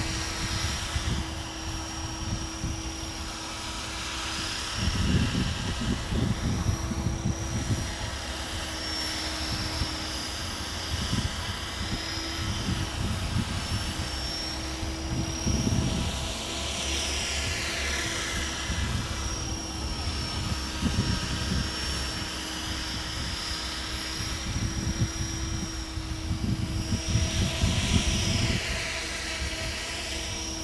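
Tarot 500 electric radio-controlled helicopter flying, its motor and rotor giving a steady whine while the blade noise sweeps up and down in pitch as it passes back and forth. Low gusts buffet the microphone several times.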